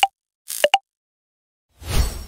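A short electronic sound effect: two quick pitched blips, the second a little higher, over a brief hiss, about two-thirds of a second in. A rushing swell of noise begins near the end.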